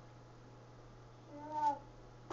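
A baby gives one short, high vocal sound, a brief 'ah' that rises and falls slightly, about a second and a half in. A low steady hum sits underneath.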